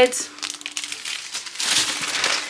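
Plastic grocery packaging and bags crinkling irregularly as shopping is handled, thickest near the end.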